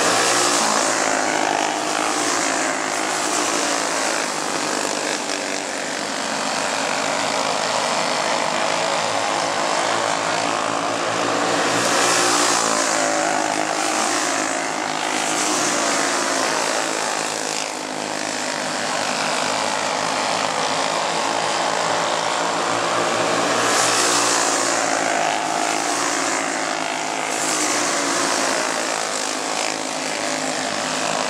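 A pack of flathead-engined dirt-oval racing karts running at speed, their engines rising and falling in pitch through the turns. The sound swells as the pack comes by, about every twelve seconds.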